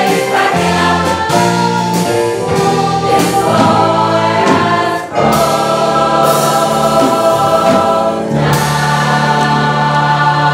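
A large mixed choir of women's and men's voices singing in harmony. The chords are held long, with a brief dip about halfway through followed by a new sustained chord, and another chord change near the end.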